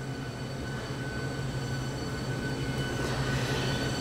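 Steady low mechanical hum with a faint high whine over it, growing slightly louder over the few seconds.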